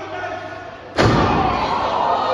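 One loud impact in the wrestling ring about a second in: a sharp crack with a deep thud under it, echoing around the large hall.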